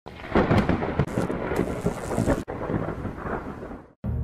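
A dense rumbling noise with a crackling hiss, broken off sharply about halfway through, then resuming more softly and fading out.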